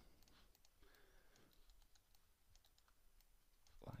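Near silence with faint, scattered clicks of a computer mouse and keyboard as a 3D mesh is edited.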